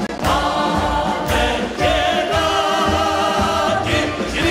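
Three singers, a woman and two men, singing together into microphones over a Czech brass band (dechovka) accompaniment with tubas and drums.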